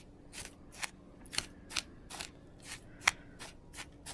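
A plastic spoon stirring loose chunky glitter and tiny glass beads in a clear plastic container. It makes short scraping, rattling strokes, about two or three a second, with one sharper click about three seconds in.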